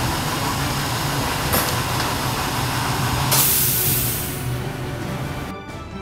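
Steady workshop room noise with a low hum, a sharp hiss about three seconds in that fades away over a second, then background music coming in near the end.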